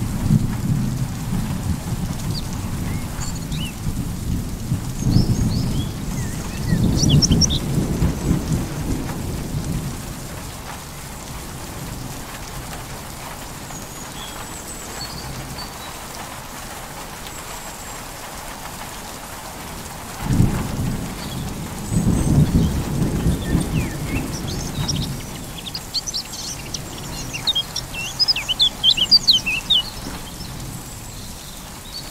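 Thunder rumbling over steady rain. A rumble runs through the first ten seconds, then the rain alone, then a sudden clap about twenty seconds in and another rumble. Birds chirp now and then, most busily near the end.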